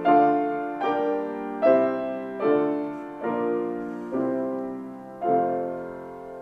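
Grand piano played slowly: seven chords struck about once a second, each left to ring and fade before the next. The last chord, about five seconds in, is held longer.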